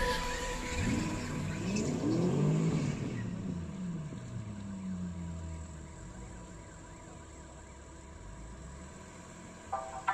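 Drift car engine revving up and down several times in quick swells, then a falling steady note that settles to a quieter low running sound. Music comes back in just before the end.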